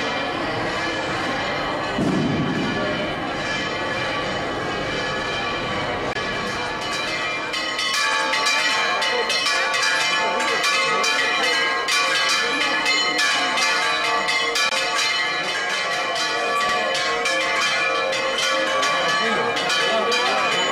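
Church bells pealing fast, with many strikes overlapping into a continuous ringing. The peal grows louder and denser about eight seconds in.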